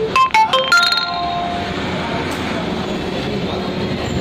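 A short chime of four or five quick ringing notes, the last held a little longer, in the first second, over a steady background noise.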